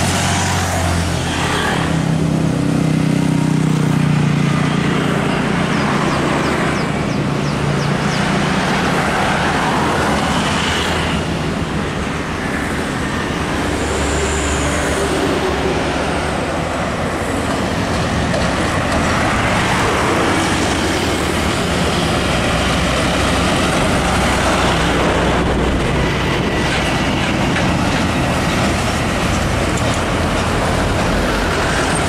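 Steady road traffic passing close by: motorcycles, cars and heavy diesel trucks driving past in a continuous mix of engine sound. A heavy engine is loudest a few seconds in.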